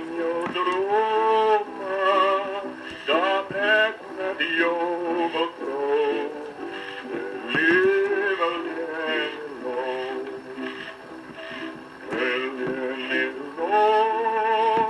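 A male voice singing a song with musical accompaniment: long held notes with vibrato and short pauses between phrases.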